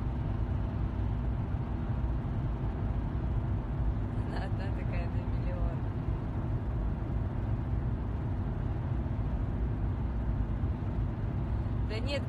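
Steady low rumble of a car heard from inside its cabin, the engine and road drone even throughout. A brief snatch of a voice comes about four seconds in.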